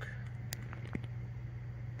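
A steady low hum with two light clicks, about half a second and a second in.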